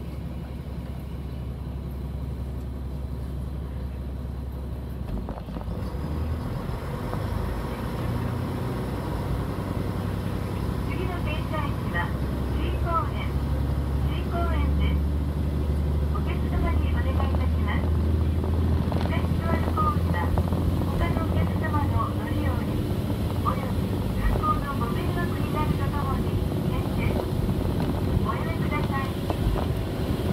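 A local train's cabin as it pulls away from a station and gathers speed: a low rumble that swells from about five seconds in and keeps growing, with a few sharp clicks near the end.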